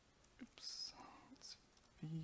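Near silence: quiet hall room tone, with a faint whispered or breathy voice sound about half a second in.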